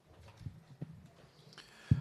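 Table microphone being handled: a couple of soft knocks, then a sharp low thump near the end as it is picked up. Faint room noise underneath.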